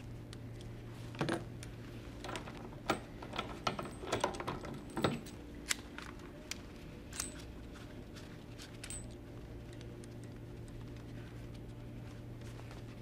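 Small metal clicks and rattles of the XP-LOK tensioning blocks and their steel tensioning wire being handled as the blocks are loosened and the excess wire pulled free. The clicks come in a scattered run through the first half, over a steady low hum.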